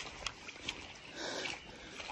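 Quiet outdoor background with a man's breath close to the microphone, one breathy exhale a little after the middle, and a couple of faint clicks of phone or gear handling.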